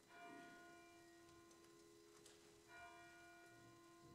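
Two faint struck bell-like notes, one at the start and another about two and a half seconds later, each ringing on and fading, over a steady low held tone.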